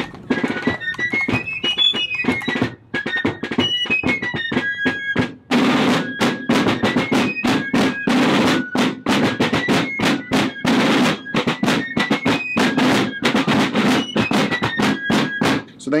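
Fife and drum music: a high fife melody stepping up and down over steady snare drum strokes. The drumming grows fuller and louder about five and a half seconds in.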